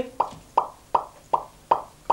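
About five hollow tongue clicks, roughly three a second, each a short pop that drops in pitch: a man clucking with his tongue to call a chicken.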